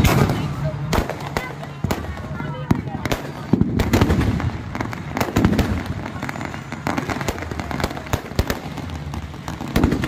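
Aerial fireworks bursting overhead, with many sharp bangs, cracks and pops coming irregularly.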